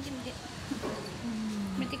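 A person's voice making short, repeated sing-song sounds with gliding pitch, holding one low note for about half a second past the middle.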